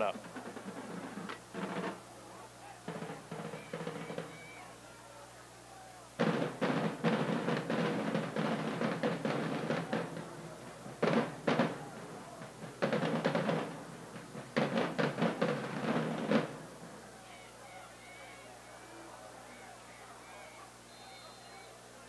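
Drums played in several rapid runs of strokes, between about 6 and 16 seconds in, with short gaps between the runs; afterwards only a low steady background remains.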